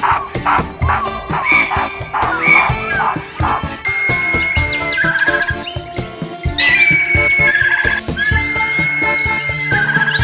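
Background music with a steady beat. Over it, short repeated animal calls come about once a second in the first few seconds, then longer held whistling tones that step down in pitch.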